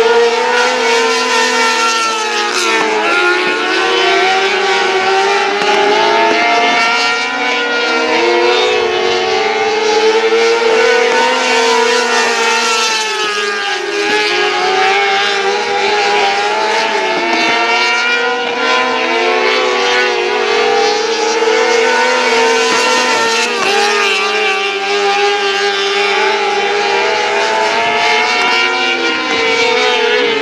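Restricted-class 600cc micro sprint cars racing on a dirt oval, their motorcycle engines at high revs. The pitch falls as the cars lift into each turn and climbs again down the straights, every few seconds, with two engines overlapping.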